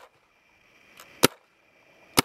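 Empire Axe electronic paintball marker firing single shots: a sharp pop at the very start and another about a second and a quarter in.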